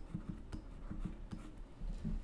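Faint, irregular tapping and scratching of a stylus writing on a pen tablet.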